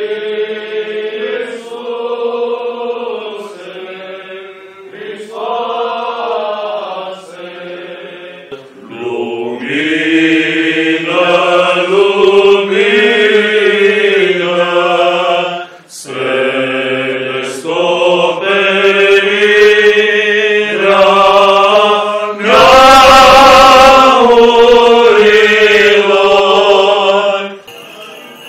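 Eastern Orthodox liturgical chant sung by men's voices, in sustained, slowly moving phrases. Near the end a loud noisy rush lies over the singing for a couple of seconds.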